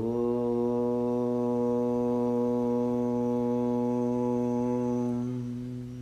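A single long chanted "Om" by a low voice, held on one steady note for about five seconds after a brief upward scoop into the pitch, then closing to a hum and fading near the end.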